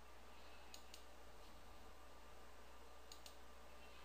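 Faint computer mouse clicks over a low steady hum: a quick pair of clicks just under a second in, and another pair a little after three seconds in.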